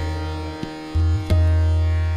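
Tanpura drone with tabla accompaniment: deep bayan strokes that ring on for more than a second, a new one struck about a second in, with a few sharp taps on the drum, while the voice rests.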